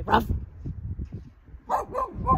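Dog barking, with one sharp bark just after the start.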